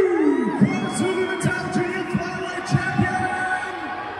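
Arena sound system playing a run of low thuds that drop in pitch, about two to three a second, like a heartbeat, over crowd noise. It fades toward the end.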